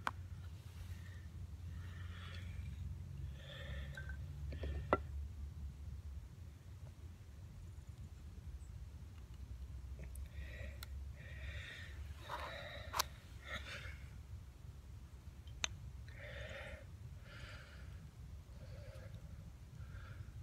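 A man breathing hard in a series of gasps and sighs, worn out from working a bow drill. A few sharp wooden clicks and a low steady rumble sit underneath.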